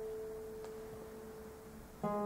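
A classical guitar note left ringing and slowly fading after a chord, one steady tone with a faint tick about a third of the way in.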